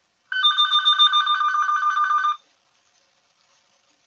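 Electronic telephone ringing: one rapidly warbling two-tone trill ring lasting about two seconds, starting a moment in.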